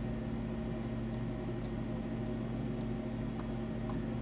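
Steady low background hum with a faint even tone, the room noise of a home recording at a computer, with a couple of faint clicks near the end.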